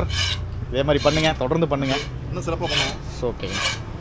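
Metal ladle scraping and stirring in a large iron frying pan, repeated rasping strokes about once a second.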